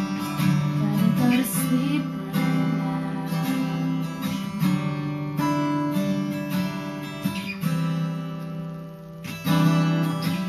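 Acoustic guitar strumming chords while a second guitar plays a lead solo line over it, with no singing. A fresh strong strum comes in near the end after a brief drop in level.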